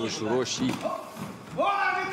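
Speech: a voice talking, with no other clear sound standing out.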